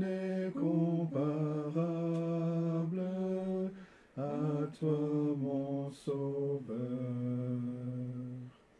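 A slow French hymn sung without accompaniment, one melody line in long held notes, with a short break about halfway through.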